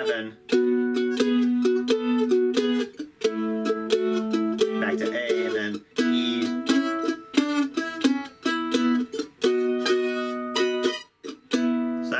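Ellis F-style mandolin strummed in a blues shuffle rhythm through a progression in E, with the third finger and pinky rocking between the sixth and seventh frets over each chord in a guitar-like boogie pattern. The strumming stops briefly a few times between phrases.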